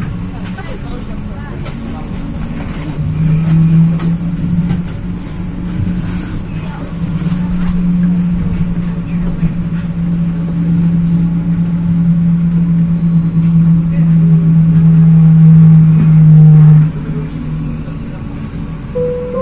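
Pesa Fokstrot 71-414 low-floor tram in motion, heard from inside the passenger cabin: a steady low running hum over the rumble of the wheels on the rails, swelling through most of the stretch and dropping away abruptly about a second before the end.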